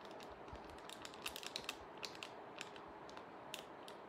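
Faint, irregular light clicks and taps, a small cluster of them a little over a second in, over low room noise.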